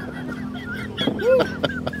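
People laughing, loudest a man's single hooting rise-and-fall laugh about a second in, over wavering high-pitched laughter from others, as a reaction to a fiery hot sauce.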